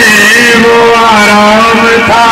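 Brass band playing a loud melody: a wind instrument, such as a saxophone or clarinet, holds long notes that slide from one pitch to the next. The recording is very loud.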